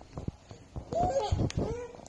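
A young child making short, high-pitched babbling vocal sounds that rise and fall in pitch, mostly in the second half, with a sharp tap about one and a half seconds in.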